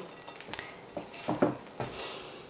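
Spatula stirring and folding a moist pumpkin-purée dumpling mixture in a glass bowl, with several short scrapes and knocks against the glass.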